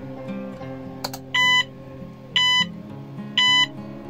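A click from the arcade button, then the game's piezo buzzer sounds three identical short beeps about a second apart, each a single steady pitch, over background acoustic guitar music.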